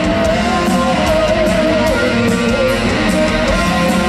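Live hard rock band playing an instrumental passage: a lead electric guitar line with bent, wavering notes over drums and steady cymbal hits.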